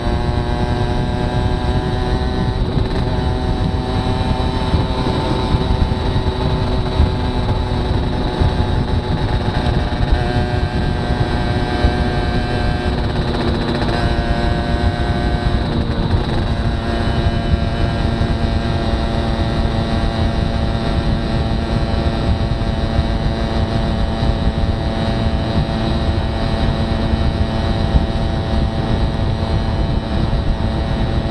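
Aprilia Classic 50 moped's small two-stroke engine running steadily at cruising speed, about 45 km/h. Its pitch shifts slightly a few times, over a constant low rush of wind and road noise.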